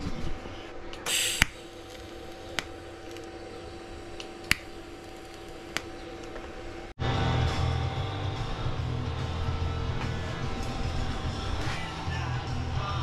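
TIG welder tack-welding thin sheet-metal strips onto a steel motor housing: a steady electrical hum with a short hiss and a few sharp clicks. After a sudden cut about seven seconds in, background rock music takes over.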